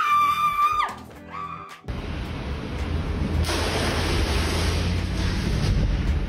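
A woman screams on one held high note that lasts about a second and then drops off, followed by a shorter cry. After an abrupt cut, a loud, steady low rumble with hiss fills the rest of the clip, the noise of a car in motion heard from inside the cabin.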